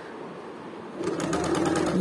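Sewing machine stitching a seam through cotton fabric, running steadily and getting louder about a second in.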